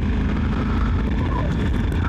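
Motorcycle riding along at road speed: a steady low engine drone with road noise.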